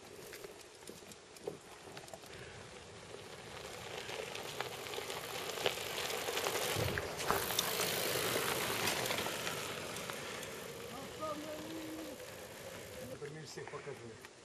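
Mountain bike rolling over a rocky desert track: a hiss of knobby tyres on gravel with small rattles and clicks, mixed with wind on the microphone. It swells in the middle and fades away.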